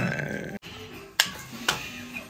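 Two sharp plastic clicks about half a second apart as a wireless-earbud charging case is handled and put down on a hard tabletop.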